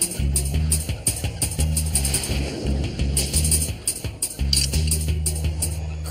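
Upbeat background music with a pulsing bass line and a steady drum beat. The bass settles into one held note near the end.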